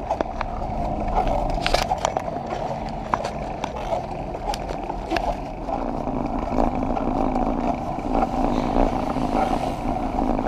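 Rolling bicycle noise picked up by a bike-mounted camera: a steady tyre-on-road rumble with scattered rattling clicks as the bike rides over cracked tarmac.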